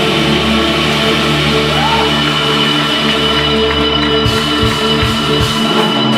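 Indie rock band playing live, electric guitars holding ringing chords over a steady wash of sound. About four seconds in, regular drum beats come in under the chords.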